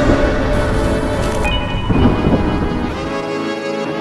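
A thunder sound effect rumbling over a sustained chord of background music; the rumble swells again about two seconds in, then dies away shortly before the end, leaving only the music.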